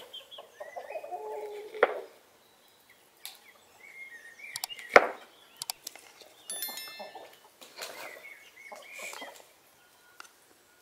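A kitchen knife cutting tomato on a wooden board, with a few sharp knocks, the loudest about five seconds in. Birds call and chirp throughout, with clucking chickens among them.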